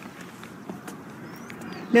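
Low, steady outdoor background with a few faint ticks and two faint high chirps, then a girl's voice starts speaking near the end.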